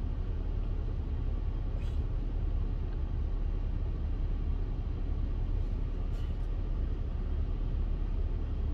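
Steady low rumble inside a car's cabin, from the car running. Two faint, brief ticks come about two and six seconds in.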